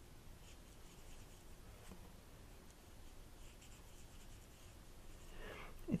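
Faint scratching of a Stampin' Blends alcohol marker tip stroking across cardstock in short strokes while shading a small stamped image.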